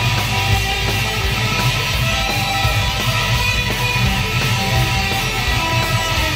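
Electric guitar lead played fingerstyle, the strings plucked with the tip of the middle finger instead of a pick, over a backing track with a steady low bass end.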